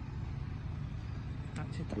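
Steady low outdoor rumble with no clear events, and a man's voice starting to speak again near the end.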